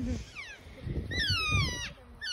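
Elk calling: high-pitched squealing calls that slide down in pitch, a short one about half a second in and a longer, louder one from about a second in.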